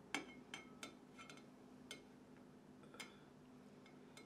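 Faint clinks and taps of a metal cake server against a glass cake stand while a slice of cake is cut and lifted: about six light ticks spread over a few seconds, a couple with a brief glassy ring.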